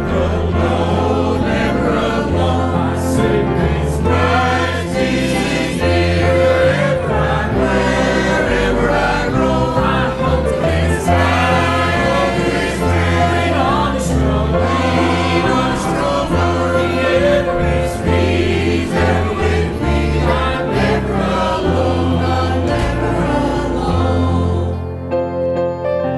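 Mixed church choir singing a hymn with instrumental accompaniment and a steady bass line.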